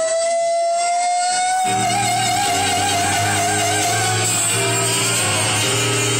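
Live music on an electronic keyboard: one long held high note that slides slightly up and then wavers, with low sustained chords coming in about two seconds in.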